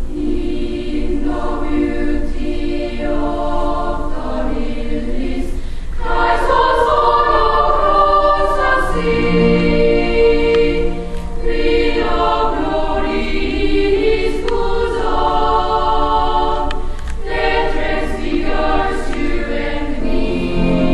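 Children's choir of boys and girls singing in harmony, holding long notes in phrases separated by short breaths.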